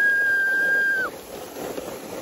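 A long, high-pitched, steady scream from a sled rider sliding down a snow slope, ending with a short drop in pitch about a second in. After it comes the softer hiss of the sled running over the snow.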